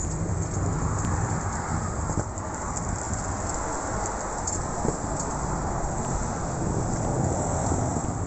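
A heavy wheeled luggage bag dragged over concrete paths, making a steady rolling rumble with no breaks.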